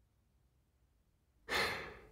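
Near silence, then a single audible breath from the male narrator, about a second and a half in, fading away near the end.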